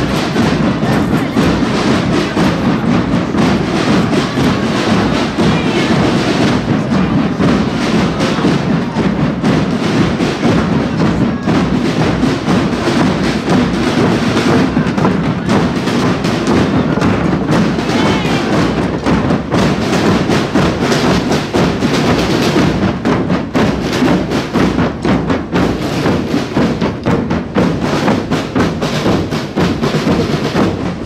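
A group of street drummers beating large rope-tensioned bass drums, playing a steady, dense rhythm.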